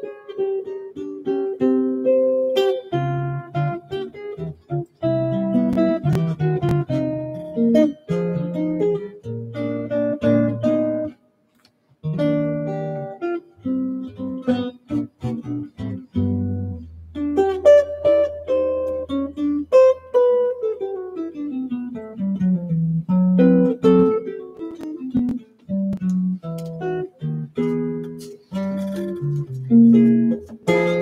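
Gibson archtop jazz guitar played fingerstyle: solo chord-melody with bass notes under chords and single-note runs. It stops briefly about a third of the way in, and past the middle a low bass note rings on for a few seconds beneath a falling line.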